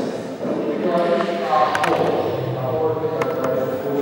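A person's voice, talking or chanting, with a few short sharp clicks partway through.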